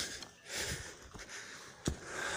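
A hiker breathing hard through nose and mouth, out of breath on a steep uphill climb, with one breath about half a second in. A single sharp click comes near the end.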